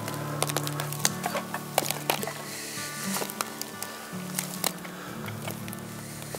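Background music with held low notes, over footsteps on the dry sticks of a beaver dam: a scatter of sharp clicks and crackles as the sticks shift and snap underfoot.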